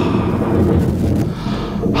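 Thunder sound effect: a loud, steady rolling rumble with no distinct strikes.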